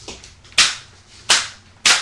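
Metal crutches striking each other in a mock fight: three sharp clacks in quick succession, less than a second apart, with a fainter knock just before them.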